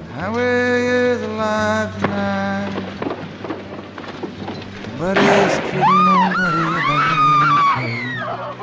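Old film soundtrack of a scuffle: loud shouting near the start, a sharp bang about five seconds in, then a woman's high screams rising and falling, over a low steady drone.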